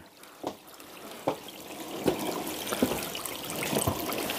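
Water trickling, growing louder over the first two seconds, with a few short faint knocks.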